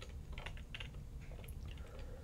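A few faint, irregular clicks of computer keyboard keys being pressed.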